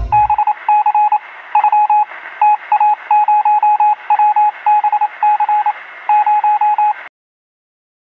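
Electronic beeping sound effect: runs of short, quick beeps all at one pitch over a faint hiss, like a computer terminal printing out text. It stops suddenly about seven seconds in.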